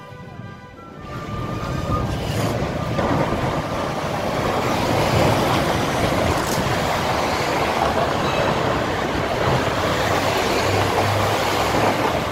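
Road traffic on the vehicle lane: a loud, steady rush of cars and trucks driving past with a low rumble. It builds up over the first two seconds.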